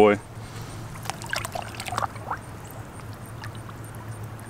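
Water sloshing and trickling in small splashes as a large largemouth bass is lowered by hand into shallow pond water to be released, over a low steady hum.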